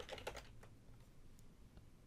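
Faint computer keyboard keystrokes as a word is retyped in a text box: a quick cluster of taps at the start, then a few scattered ones.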